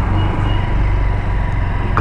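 Honda CB200X motorcycle's single-cylinder engine running steadily at low speed, heard from the rider's seat along with road and wind noise.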